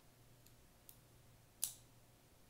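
Benchmade Mini Barrage spring-assisted folding knife being handled: two faint clicks from the lock mechanism, then a sharp metallic snap near the end as the blade is folded shut into the handle.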